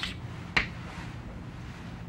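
Chalk tapping sharply against a blackboard twice, about half a second apart, over a low steady hum.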